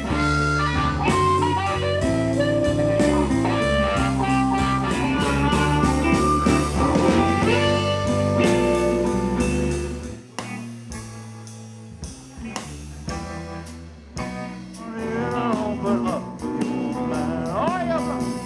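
Live blues band playing an instrumental passage: electric guitar over bass and drums. About ten seconds in, the band suddenly drops to a quiet, sparse stretch, then builds back up near the end.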